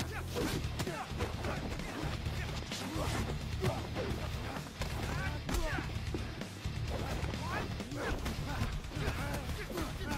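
Action-film fight soundtrack: music with a steady bass line and a voice going "yeah, yeah" at the start, over a run of sharp punch and kick impact effects scattered through.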